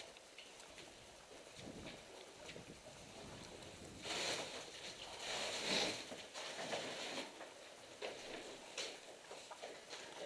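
Footsteps on a floor strewn with rubble and broken boards: scattered crunches and ticks, with a louder stretch of scraping and crunching about four seconds in that lasts a couple of seconds.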